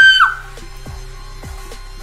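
A woman's loud, high-pitched excited scream, cut off about half a second in. Then the music video's track plays more quietly, with a low bass note and a drum hit under a second apart.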